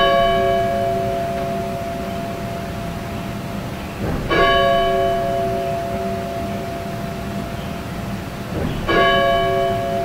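A church bell tolling slowly, struck about every four and a half seconds. Each stroke rings on with a long, slowly fading tone.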